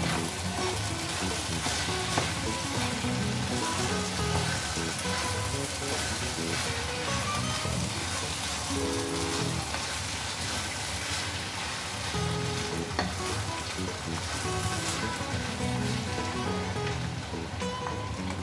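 Minced beef and vegetable meat pie filling sizzling in a frying pan, with a steady hiss, as it is stirred and turned with a wooden spoon.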